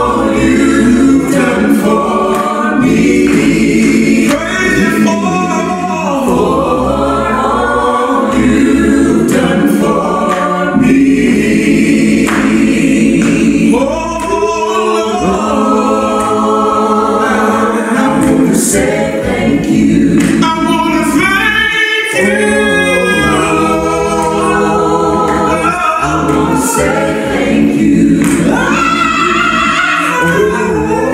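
A choir singing a gospel hymn a cappella, unaccompanied voices.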